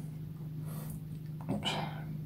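A steady low electrical hum, with a brief spoken "oops" near the end.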